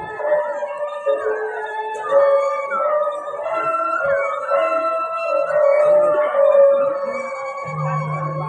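Balinese gong kebyar gamelan playing a slow lelambatan piece: bamboo suling flutes with wavering, sliding ornaments over sustained ringing bronze metallophone tones. A low steady tone enters near the end.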